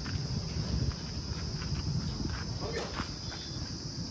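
Light knocks and scuffs of a person climbing into the cab of a JCB backhoe loader, over a steady high-pitched hiss and an uneven low rumble.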